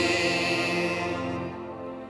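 Church music: a sung response with keyboard accompaniment, ending on a long held chord that slowly fades away.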